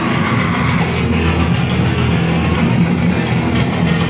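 Punk band playing live: loud distorted electric guitar, bass and drum kit in a passage with no singing.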